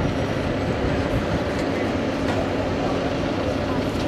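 Steady outdoor background sound: a low, even mechanical hum under a haze of indistinct voices, with no distinct events.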